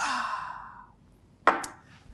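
A man's long breathy exhale right after drinking water, fading over about a second, then a short knock about a second and a half in as a copper tumbler is set down on the table.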